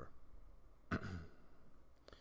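A man's short sigh, one audible breath about a second in.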